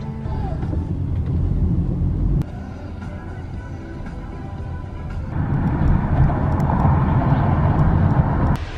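Low road and engine rumble of a car in motion, heard from inside the cabin under background music. The sound changes abruptly twice, about two and a half and five seconds in, and is louder after the second change.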